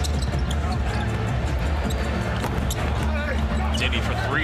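Basketball game sound on an arena court: a basketball bouncing on the hardwood, with short knocks and squeaks, over crowd noise and arena music with a steady deep bass.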